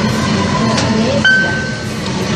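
Mitsubishi machine-room-less elevator car travelling, a steady rumble of the ride inside the car, with a single short electronic beep a little over a second in.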